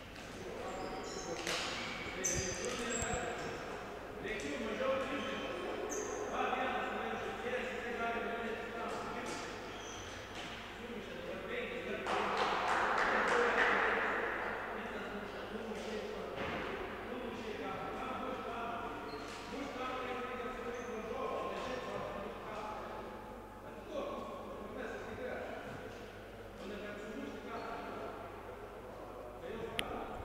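Echoing sports-hall ambience during a basketball timeout: faint, indistinct voices with occasional basketball bounces on the wooden court. A louder rush of noise comes from about twelve to fifteen seconds in.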